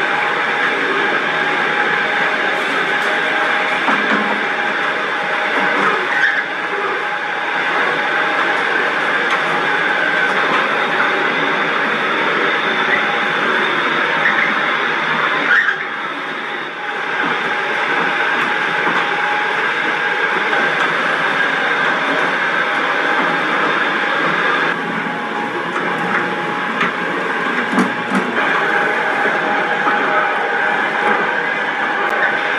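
Large electric dough mixers running: a loud, steady mechanical drone with a constant whine, dipping briefly about halfway through.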